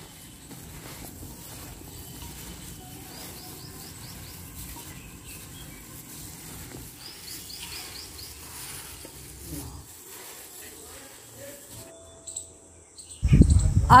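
Quiet outdoor ambience with a bird calling twice in short runs of quick high chirps, under the soft sounds of a plastic-gloved hand mixing spice-coated raw mango pieces in a steel bowl.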